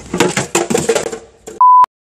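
A jumble of knocks and background noise, then, about a second and a half in, one loud, pure electronic beep lasting about a quarter of a second that cuts off suddenly.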